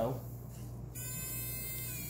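Battery-powered electric eraser switched on about a second in, its small motor giving a steady high whine. The pitch dips slightly near the end as it starts erasing a stray pencil stroke on the paper.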